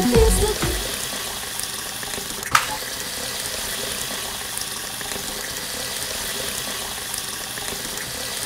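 Water running from an outdoor tap, a steady splashing hiss, after the song's music stops within the first second. One sharp click about two and a half seconds in.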